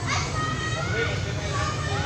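Chatter of several high-pitched voices, many short calls overlapping, over a steady low background rumble.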